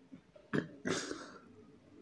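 A man makes two short throat noises while eating cups of yoghurt: a brief one about half a second in, and a longer, breathier one about a second in.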